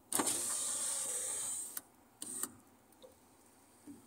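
A car's electric window motor runs steadily for about a second and a half as the side window is wound up. A click and a short knock follow.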